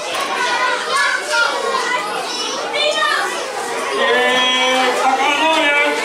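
A large crowd of young children chattering and calling out all at once, with one voice rising above the rest about two-thirds of the way through.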